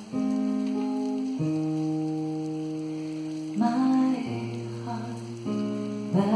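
Live kirtan music: voices chant in long held notes that change pitch every second or two, with acoustic guitar accompaniment.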